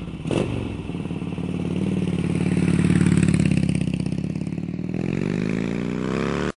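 Motorcycle engine running with a steady pulsing beat, growing louder around the middle, then rising in pitch near the end as it revs.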